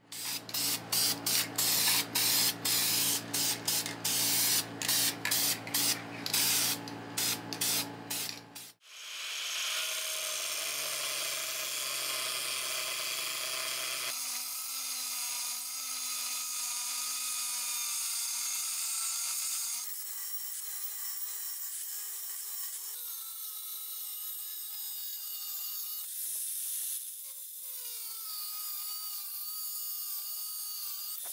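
For the first nine seconds, a fast run of short sharp strokes over a steady hum. Then an angle grinder with a thin cut-off wheel runs steadily, cutting through 5160 leaf-spring steel, a hissing whine that shifts pitch several times and wavers near the end as the wheel is pressed into the cut.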